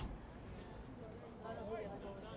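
Voices calling out with unclear words over open-air background noise, with a single sharp knock right at the start.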